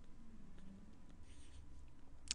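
Faint scratching of a stylus writing on a drawing tablet, over a low steady background hum.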